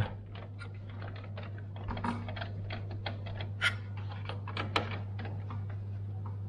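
Screwdriver turning a CPU heatsink's mounting screws, a run of small irregular metal clicks and ticks over a steady low hum. The screws are being tightened a little at a time in a cross pattern so the heatsink sits level on the processor.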